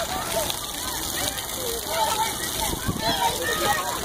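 Splash-pad water jets spraying in a steady hiss, with children's voices over it.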